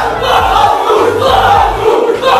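A group of men in a team huddle shouting together in a loud war cry.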